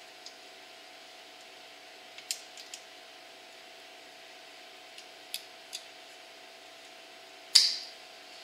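Locking pliers working a drum brake shoe's hold-down spring retainer against its pin: a few scattered small metal clicks, then one much louder metallic clank near the end, over a faint steady hum.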